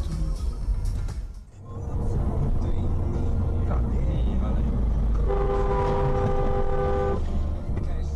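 Steady low road and engine rumble of a car driving on a highway, dipping briefly about a second and a half in. About five seconds in, a car horn sounds one steady note held for about two seconds, then stops.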